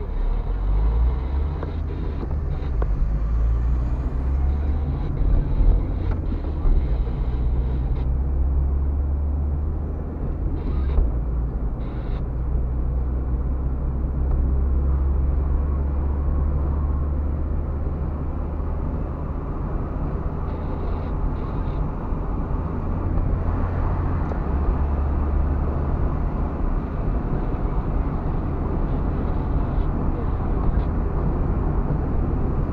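A car driving, heard from inside the cabin: a steady low engine drone that shifts in pitch a few times as the car speeds up and slows, under a constant hiss of tyre and road noise.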